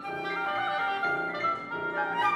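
Chamber trio of flute, oboe and piano playing classical music: the woodwinds hold and weave melodic lines over a pulse that repeats about every 0.6 s.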